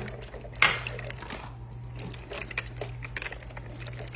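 A whisk stirring fresh blueberries through a runny gelatin-and-yogurt mixture in a plastic bowl: light wet clicks and taps, with one sharper knock about half a second in.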